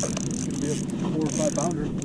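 Quiet, low talking over a steady hiss of wind and water.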